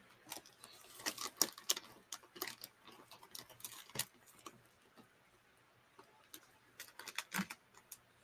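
Faint, irregular clicks and taps close to the microphone, in a busy run about a second in, scattered ones through the middle and another quick cluster near the end.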